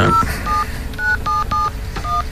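Telephone keypad dialing a number: about six short touch-tone (DTMF) beeps at uneven spacing.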